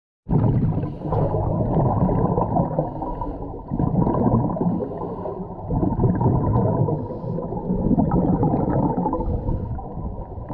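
A scuba diver's regulator breathing underwater: exhaust bubbles rumbling in repeated surges with each breath, heard muffled and dull.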